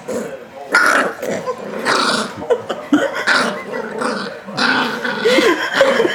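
Yorkshire terrier growling in rough, repeated bursts, protesting at being held and tickled.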